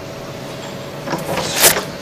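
The Velcro strap of a blood pressure cuff rips open as it is pulled off the arm: a short rasping tear about a second in, loudest just before the end, over a faint steady hum.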